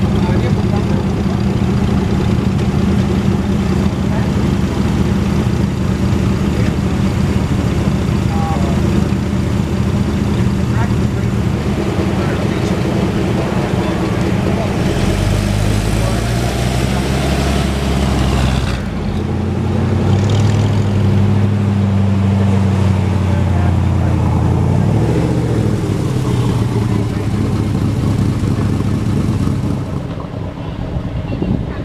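1947 Talbot-Lago T26 Record's straight-six engine idling steadily, then revving as the car pulls away. After about twenty seconds the engine note rises and falls.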